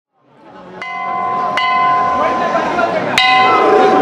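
A metal signal bell struck three times with a hammer, unevenly spaced, each strike left ringing, over a steady crowd murmur. It is typical of the bell on a Málaga Holy Week trono, rung as the command to the bearers.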